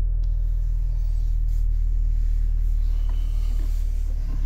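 Steady low rumble of the SEAT Leon's 1.5 TSI four-cylinder petrol engine idling, heard from inside the car's cabin.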